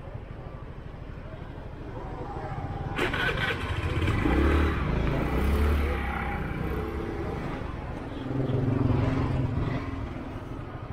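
Motor scooter engines running at low speed, growing louder with a sudden jump about three seconds in and swelling again near the end.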